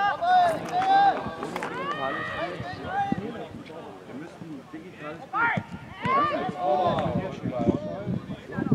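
Several men shouting across a football pitch during play, short calls from overlapping voices, loudest in the first second and again past the middle.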